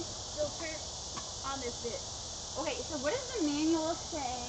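Steady high chirring of an insect chorus, with quiet women's voices talking and loudest toward the end.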